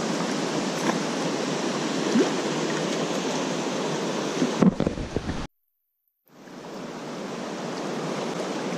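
Steady rush of river rapids. About four and a half seconds in there is a brief low rumble, then the sound cuts out completely for nearly a second and fades back in.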